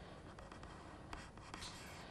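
Faint scratchy rubbing of a ball-tipped embossing stylus being drawn along a stencil edge over card stock, dry-embossing the paper, with a few light ticks.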